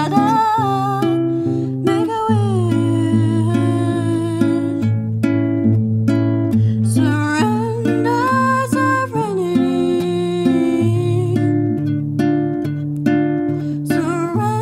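A solo voice singing a slow melody with long held, sliding notes over an acoustic guitar picked in a steady pattern.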